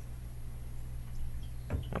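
Quiet room tone over a steady low electrical hum, with a short sound near the end.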